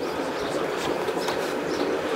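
Motorboat engine idling: a steady, even rumble.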